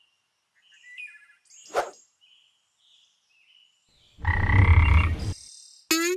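Cartoon sound effects: a faint twinkly chirp and a short knock, then a loud, low, rasping croak lasting about a second, and a sharp click with a quick falling zip near the end.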